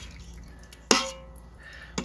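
A metal slotted spoon clinks once against a stainless steel Instant Pot liner about a second in, with a brief ringing after the strike, as curds are scooped out.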